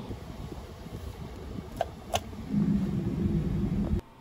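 Two sharp clicks about two seconds in, a push-button being pressed on a national-anthem playback control box, over a steady low rumble; a low hum comes in shortly after.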